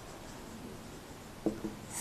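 Faint strokes of a marker pen writing on a whiteboard, with a couple of short clicks near the end.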